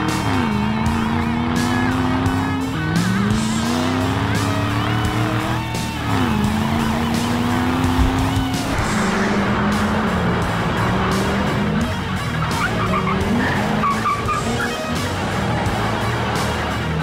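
A car engine accelerating hard through the gears: its note climbs, then drops at each upshift, three times about three seconds apart, before settling into a steadier high-speed run with tyre squeal near the end. Background music plays under it.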